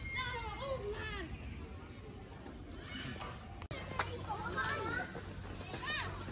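Voices without clear words, with high sliding vocal sounds like a child's; an abrupt break a little past halfway, after which more high voice-like sounds follow.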